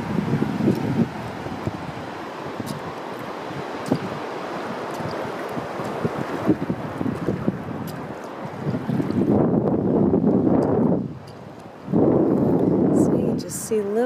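Wind buffeting the microphone over the wash of shallow seawater around wading feet, swelling into two louder stretches in the last five seconds.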